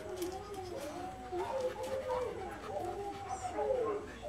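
Several dogs howling together, long wavering howls that rise and fall and overlap one another without a break.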